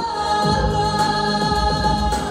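A male singer holds a long note over a pop backing track. A low bass beat comes in about half a second in.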